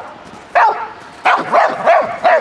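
Australian cattle dog (heeler) barking at an approaching decoy during protection training: a few short barks starting about half a second in, coming closer together towards the end.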